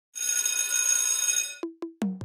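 Logo sound effect: a high, shimmering bell-like ring lasting about a second and a half and fading out, then two quick low plucked notes near the end.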